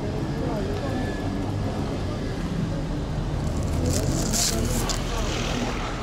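Steady low rumble of a passing motor vehicle, with a hiss that swells about four seconds in and then fades.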